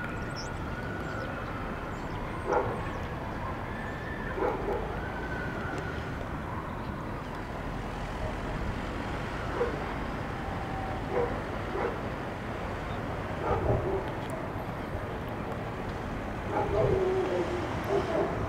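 Distant city hum, mostly traffic, rising from the streets below, with a dog barking now and then. The barks are loudest and run into a short series near the end.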